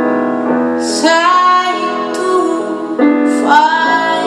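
Live pop song: a woman sings over electric keyboard chords, her voice sliding up into long held notes with vibrato, once about a second in and again near the end.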